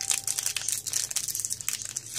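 Foil Pokémon booster pack wrapper crinkling in the hands as it is being opened, a dense run of crackles.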